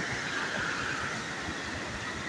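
Fast, muddy floodwater rushing down a riverbed: a steady, even rushing noise with no break.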